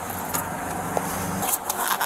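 Vehicle noise: a steady low engine hum with a few light clicks, the hum dropping away about one and a half seconds in.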